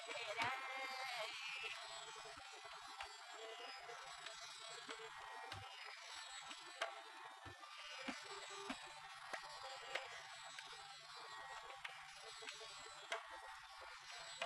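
A sung phrase trails off in the first second or two. Then a tanpura drone rings on quietly with its buzzing sustained strings, with faint plucks here and there.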